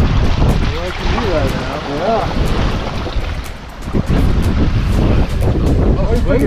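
Wind buffeting the microphone on a small boat at sea, over the wash of water around the hull, easing for a moment past the middle. A voice is heard briefly in the first couple of seconds.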